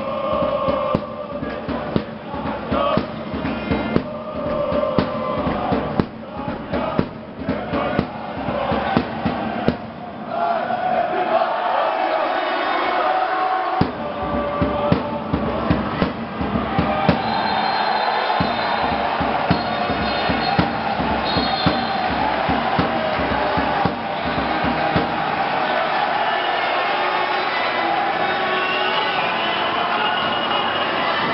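Crowd of supporters singing a chant together, with drumbeats and other thumps, most frequent in the first ten seconds or so.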